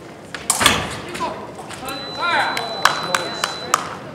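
Epee bout action: a sudden impact and shout about half a second in, then the electric scoring machine's steady high tone sounding for nearly two seconds, over yelling and a few sharp clicks.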